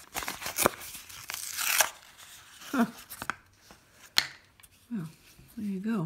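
Packaging on a powder foundation compact tearing and crinkling as it is pried open by hand, loudest over the first two seconds, with a couple of sharp clicks.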